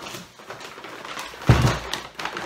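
Rustling as a full paper grocery bag is lifted, then a thump with crinkling paper about one and a half seconds in as the bag is set down on a wooden desk.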